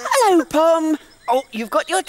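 A high-pitched character voice making wordless sounds: a falling squeal, a held note, then a run of short babbling calls.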